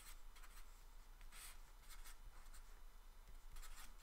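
Felt-tip marker writing on paper: faint, scratchy strokes coming and going, the clearest about one and a half seconds in.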